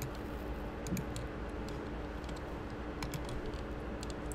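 Faint, scattered clicks from a computer keyboard and mouse being worked at irregular intervals, over a steady low hum.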